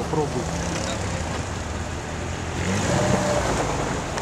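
An off-road 4x4's engine running steadily, its revs rising about two and a half seconds in.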